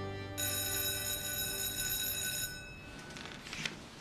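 An electric school bell rings for about two seconds, starting just after the start and cutting off, over soft background music that fades out with it. A short click follows near the end.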